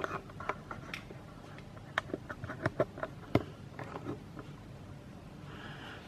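Handling noise as the camera is moved in closer: a scatter of light clicks and knocks over faint workshop room tone, most of them in the middle of the stretch.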